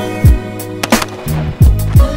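Background hip-hop style music with a beat: deep bass drum hits that fall in pitch, over sustained chords.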